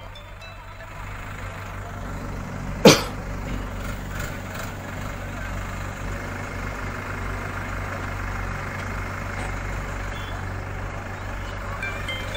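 A bulldozer's engine running steadily with a low hum while clearing an encroachment. A single sharp, loud bang about three seconds in is the loudest sound.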